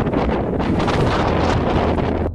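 Strong storm wind blowing hard over the microphone, a loud, steady rushing noise: the gale running ahead of a thunderstorm.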